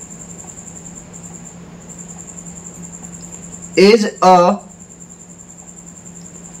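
A steady, high-pitched pulsing trill of a chirping insect runs throughout over a low steady hum, briefly dropping out about a second and a half in. A man's voice speaks a word or two a little past the middle.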